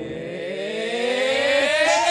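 A synthesized suspense riser: a layered tone that climbs steadily in pitch and grows louder, the build-up before a verdict is revealed.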